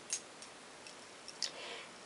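Several faint, sharp clicks over quiet room hiss, the first the loudest, followed by a brief soft hiss near the end.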